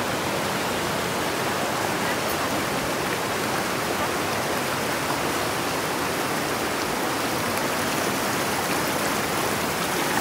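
Fast-flowing rocky river rushing steadily over stones and boulders.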